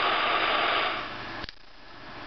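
Cloud B Gentle Giraffe sound box playing its steady hissing 'sleep' sound through its small speaker, fading about a second in, then a single click about one and a half seconds in as the box is switched off, leaving only a fainter hiss.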